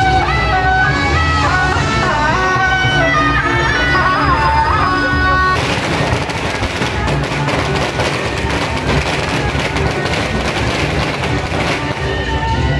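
Procession music, a shrill reed-horn (suona) melody over drums, for about five seconds. Then a string of firecrackers bursts into continuous rapid crackling that drowns the music and lasts to the end.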